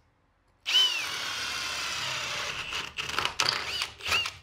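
Cordless drill boring a hole through a wooden wall stud for electrical cable. It starts about a second in, runs steadily for about two seconds, then gives several short spurts near the end.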